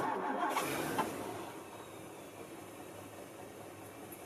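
A 1963 Ford Thunderbird's 390 V8 starting: it fires abruptly and runs loudly for about a second, then settles into a steady idle.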